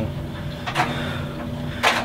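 Steady low hum, as from room machinery or electrical equipment, with a short breath-like noise near the end.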